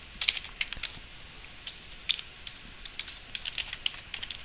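Typing on a computer keyboard: runs of quick, irregular keystrokes with short pauses between them.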